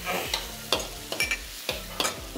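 A metal spoon stirs chicken pieces in sauce in a hot wok, scraping and knocking against the pan about five times over a steady sizzle of frying.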